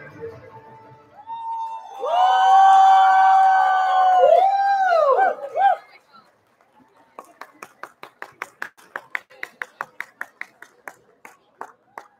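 Audience cheering and clapping: a loud, long, high-pitched whoop from a voice close by, breaking into a few rising-and-falling yelps at its end, then steady clapping close by at about five claps a second.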